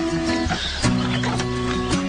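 Acoustic guitar strumming chords in the instrumental intro of a pop ballad, before the vocal comes in.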